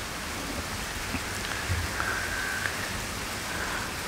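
Steady background hiss with no clear events, plus a faint held tone for about a second around the middle.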